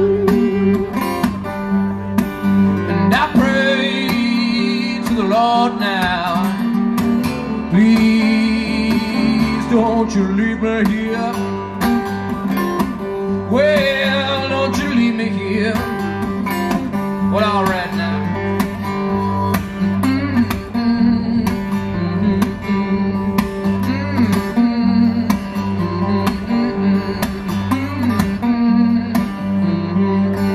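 Live steel-string acoustic guitar played hard with a steady, pulsing bass line under the picked melody, with brief sung or hummed lines in the first half.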